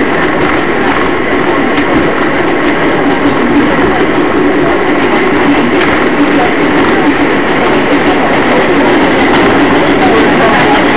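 Inside an R188 subway car running at speed on elevated track: loud, steady running noise of the train.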